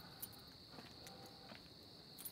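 Faint, steady chirring of crickets, with a few small soft clicks.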